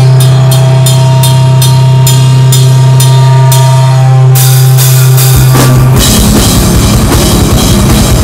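A crust/hardcore metal band playing live and very loud. A long held low note runs under steady cymbal strokes, then about five and a half seconds in the full band crashes in with fast, dense drumming.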